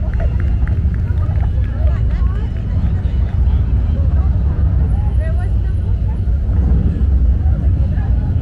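Jeep Wranglers driving slowly past at close range with a steady low rumble, under the chatter of people at the curb.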